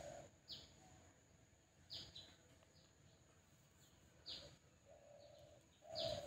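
Near silence, broken by a small bird's short, high, falling chirps, about six of them spread over a few seconds.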